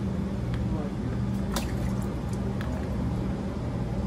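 Water dispensed from a pipette into the open top of a glass chromatography tube, with small wet squishing and dripping sounds and a few faint clicks. A steady low hum runs underneath.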